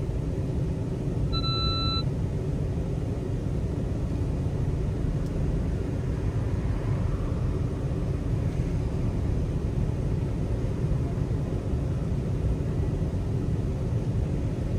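Steady low rumble of a car moving slowly in traffic, heard from inside the cabin. About a second and a half in, a short electronic beep sounds once.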